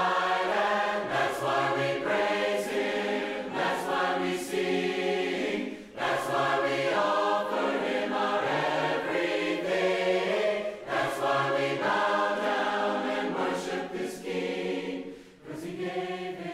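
Choir singing a cappella in long, sustained phrases, with short breaks between phrases about six, eleven and fifteen seconds in.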